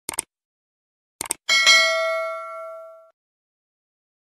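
Subscribe-button animation sound effect: two quick clicks, two more about a second later, then a bright notification-bell ding that rings out and fades over about a second and a half.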